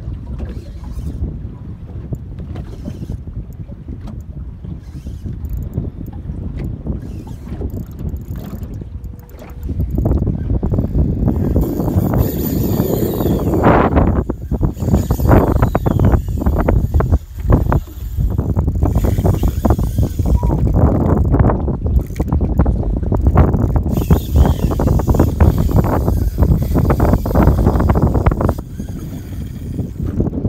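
Wind buffeting the microphone, with water slapping against a small boat's hull. It gets louder and gustier about a third of the way in.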